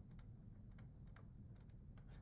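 Near silence with a few faint clicks, about two a second: a stylus tapping on a tablet screen while a word is handwritten.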